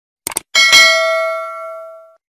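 A quick double mouse click, then a single bell ding that rings out and fades over about a second and a half: the sound effects of a subscribe-and-notification-bell button animation.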